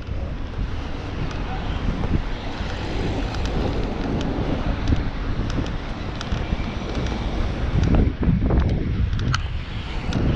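Wind buffeting a GoPro's microphone as a bicycle rides at speed, a steady rushing noise with road traffic underneath.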